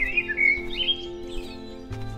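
Background music with steady held notes, and small birds chirping and twittering over it.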